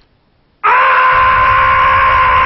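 A man's loud, sustained scream on one held pitch. It starts suddenly about half a second in, after a brief hush.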